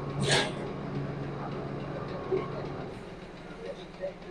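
Small 3 HP rice and dal mill running steadily, its electric motor giving a low, even hum. A short hiss comes about a third of a second in.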